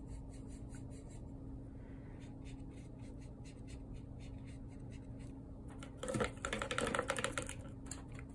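Paintbrush bristles dabbing and scraping paint, mixing it on a plastic palette and then brushing it onto cardboard: a run of quick, light scratchy ticks. A louder scuffling clatter comes between about six and seven and a half seconds in.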